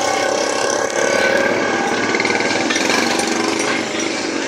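A vehicle engine running close by with a fast, even rattle.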